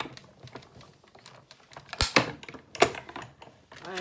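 Clicks and knocks of a manual die-cutting machine and its plastic cutting plates as a die-cut sandwich is run through, with two louder knocks about two and three seconds in.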